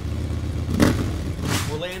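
Motorcycle engine rumbling and revving, with a sharp loud swell about a second in and another shortly after. A man's voice starts right at the end.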